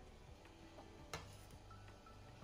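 A metal skimmer ladle clinks once against a stainless steel cooking pot about a second in, with a couple of fainter ticks, over low room hum.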